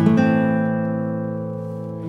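Background music: an acoustic guitar chord struck at the start, ringing out and slowly fading.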